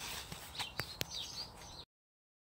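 Small birds chirping faintly, a few short high calls, with a couple of sharp clicks about a second in; the sound cuts off abruptly to silence near the end.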